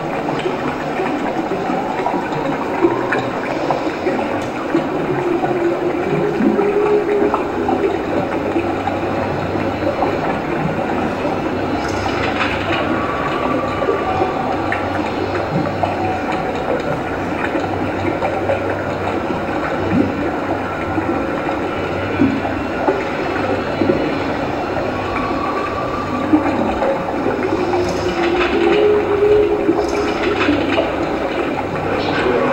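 A steady rumbling, rushing sound-effects backing track played over the hall's speakers for the dance, with a faint, briefly held high tone about halfway through and again a few seconds before the end.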